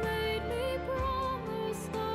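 A young female soprano singing a slow, tender melody with vibrato over instrumental backing with sustained bass notes.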